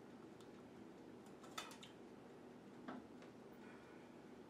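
Two light clicks of serving utensils against ceramic dishes over quiet room tone, the first, about one and a half seconds in, the louder.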